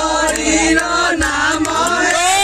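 Devotional chanting by several voices singing a sliding melody together, with sharp percussive clicks marking a beat.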